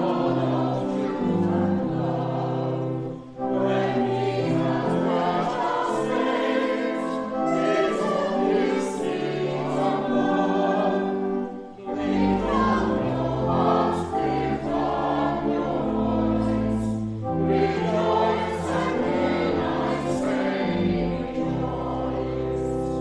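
Church choir singing a hymn over steady, held low accompanying notes. The singing breaks off briefly twice between lines, about three and twelve seconds in.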